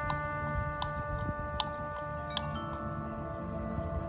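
Marching band music: a steady held chord with bell-like strikes about every second, the chord changing about two and a half seconds in.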